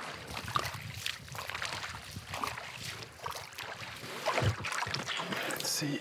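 Shallow lake water splashing and sloshing around a canoe as it is pushed through it by hand, with irregular wading steps.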